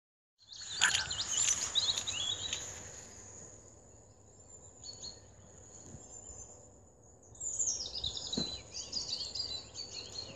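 Small birds singing and chirping in quick high phrases, in two spells: near the start and again for the last couple of seconds, over a faint steady outdoor background.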